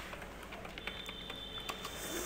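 A few separate keystrokes on a computer keyboard, single clicks spaced unevenly, as a password is typed and entered.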